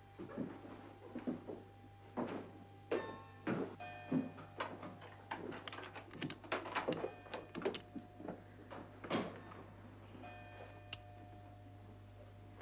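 Footsteps climbing a wooden staircase: a string of uneven knocks and thuds, with faint held tones in the background at times over a steady low hum.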